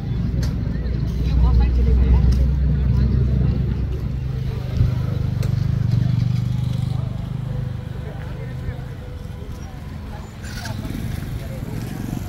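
A nearby motor vehicle engine running with a low, steady hum that fades away about two-thirds of the way through, with people's voices in the background.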